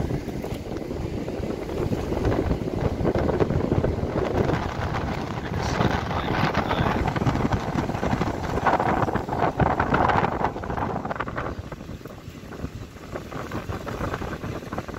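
Strong gusting wind buffeting a phone's microphone: a loud, uneven rumble that swells and eases, dropping back a little near the end.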